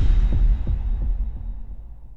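Deep bass boom of a logo-intro sound effect, with a few low throbbing pulses in its first second, slowly dying away.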